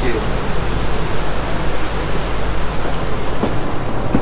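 Steady rushing noise inside an ETS express train carriage, even and unbroken, with faint voices.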